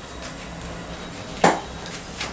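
A single sharp knock about one and a half seconds in, from the aluminium carry case being handled on a glass table, with a couple of faint ticks before it.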